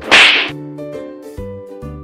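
A hard slap across a man's face: one loud, sharp crack right at the start, lasting under half a second. Light background music with a beat follows.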